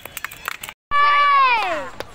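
A loud, drawn-out meow-like wail that holds its pitch and then falls, lasting about a second. It starts after a split second of dead silence, and faint rapid clicks come before the gap.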